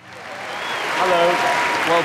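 Studio audience applause swelling up from silence, with a few voices calling out over it from about a second in.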